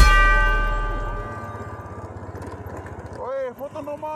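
Background music ending on a held chord that rings and fades away over about two seconds. Near the end, a few short voice-like sounds rise and fall in pitch.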